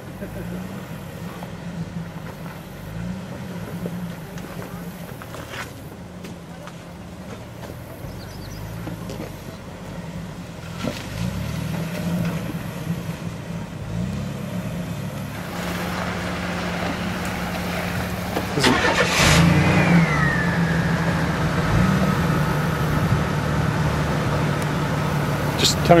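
Jeep engine running at low speed off-road, its revs rising and falling as it crawls over rocks. It grows louder and rougher past the middle, and about three-quarters of the way through a high whine drops in pitch and then holds steady.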